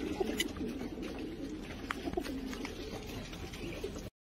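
Pigeons cooing in a loft, a continuous low warbling with a few light clicks, cutting off suddenly at the end.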